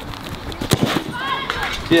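A light, basketball-style ball struck once by a foot in a penalty kick, a single sharp thud about three quarters of a second in, with a few faint footfalls of the run-up before it.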